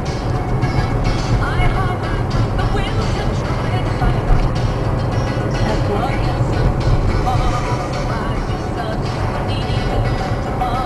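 Music with singing playing on a car radio, heard inside the moving car's cabin over a steady low rumble of engine and road.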